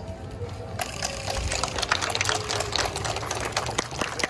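Audience applause: dense quick hand claps starting about a second in, over a faint held tone that slowly falls in pitch.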